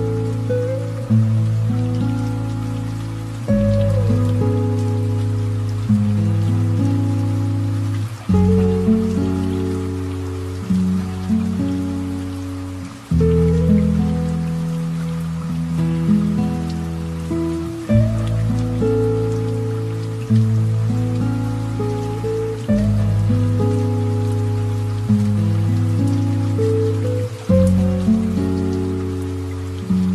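Slow, relaxing piano music in a low register, with a new chord struck about every two and a half seconds and left to fade. A light, steady rain sound runs beneath it.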